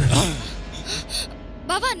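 Dramatic background music ends with a short falling-pitch sweep. Near the end a woman gasps and cries out, startled.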